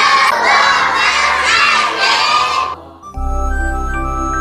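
A loud chorus of children's voices, swooping up and down in pitch, cuts off a little before three seconds in. Soft, steady instrumental music begins just after.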